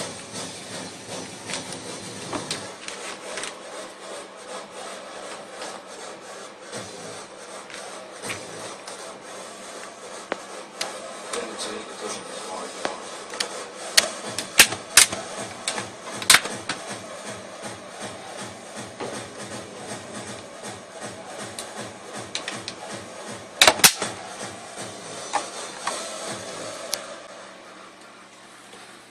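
Plastic clicks and knocks from handling an HP ProBook 4730s laptop: shutting the lid, turning it over and working the underside latches and service cover until it comes off. The sharpest clicks come in a cluster about 14 to 16 seconds in and again near 24 seconds, over a steady hiss.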